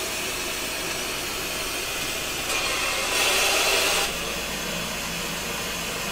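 Steady rushing hiss of horror-trailer sound design, swelling louder about two and a half seconds in and dropping back about four seconds in.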